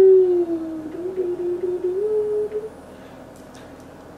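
A woman humming one long, gently wavering note that stops nearly three seconds in.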